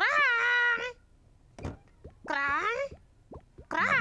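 A cartoon baby dinosaur's squeaky, high-pitched voice calling its own name, "Crong", twice: a long call right at the start and a shorter one a little past two seconds in, with a few light clicks in between.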